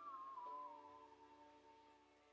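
Electric guitar's last sustained high note, wavering with vibrato, then sliding down in pitch and fading away within about a second, with a few quieter lower notes ringing on under it.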